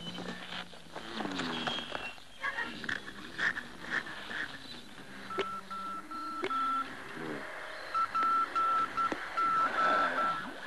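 Quick electronic beeps at one steady high pitch, starting about halfway in, breaking off for about a second, then resuming. Before them come sliding, wavering pitched tones.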